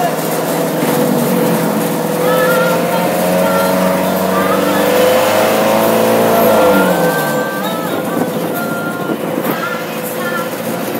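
A Metro Mini minibus engine revving up, rising steadily in pitch for about four seconds and dropping back sharply about seven seconds in. A woman's singing carries over it.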